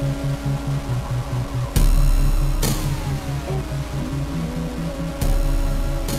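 Electronic intro music: a fast pulsing bass line, with a heavy hit about two seconds in and another near the end, each followed by a falling sweep.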